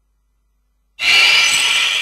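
After about a second of silence, a bright, shimmering metallic chime sting comes in suddenly and rings on, slowly fading. It is a news programme's segment-transition sound effect.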